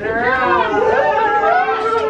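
A loud, drawn-out, high-pitched human cry without words, rising and falling in one long unbroken line that breaks off near the end.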